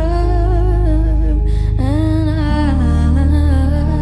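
Slow live pop ballad: a woman's voice singing a wordless, hummed-sounding melody in long wavering notes over sustained keyboard chords. The low bass chord shifts to a new one a little past halfway.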